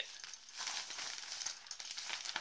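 Crinkly rustling of an REI 10-litre fabric dry sack being handled as a coil of cord is pulled out of it and the sack is lifted, a steady rustle with fine crackles.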